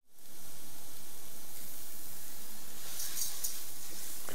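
Rice and chopped onion sizzling in hot oil in a pan, a steady hiss with a few crackles about three seconds in: the rice is being toasted for risotto until it turns glassy at the edges.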